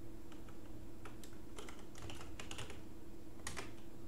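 Keystrokes on a computer keyboard: a run of irregular, quick taps, as keys are pressed to scroll through a keyboard-driven browser's settings page.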